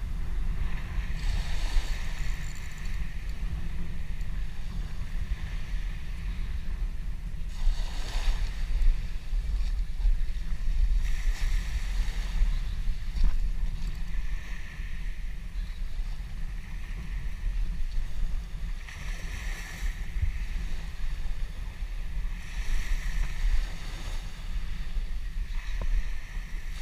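Wind buffeting the microphone in a steady low rumble, with small waves washing up on the beach every few seconds.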